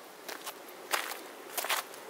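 Footsteps of shoes on a gritty paved path, passing close by: a few separate steps, the loudest about a second in and near the end.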